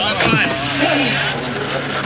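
A vlog clip playing through a phone's small speaker: a voice near the start, then a steady low hum like a vehicle heard from inside.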